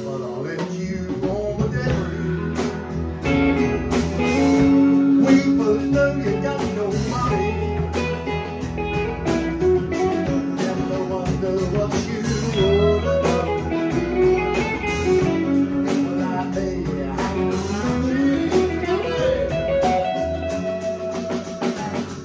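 Live band playing an instrumental passage: electric guitars, bass guitar and drum kit, with a lead line of sliding, bending notes over the rhythm.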